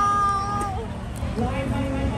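A person's high-pitched held call, like a whoop or cheer, lasting under a second at the start and dipping in pitch at its end, over crowd chatter.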